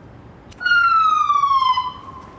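An ambulance siren gives a single short blast: one loud tone, starting about half a second in and falling steadily in pitch for just over a second before it dies away, as if sounded to startle someone.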